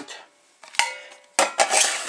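Metal baking and roasting pans clanking together as they are lifted and set down. A knock about half a second in rings on briefly with a clear metallic tone, then a louder clatter comes near the end.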